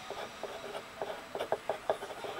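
Dip pen nib scratching across paper in a quick run of short strokes as letters are handwritten.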